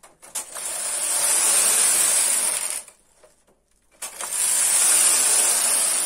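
Carriage of a domestic punchcard knitting machine pushed across the needle bed to knit a patterned row: two passes, each a steady mechanical rush with a high hiss lasting about two and a half seconds, with a pause of about a second between them.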